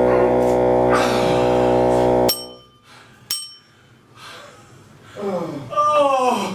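A loud, steady held drone note, like a musical sound cue, cuts off abruptly a little over two seconds in. Two sharp metallic clinks follow about a second apart. Near the end a man's voice groans with falling pitch.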